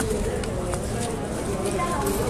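Indistinct voices of people talking, background chatter, with a faint click under a second in.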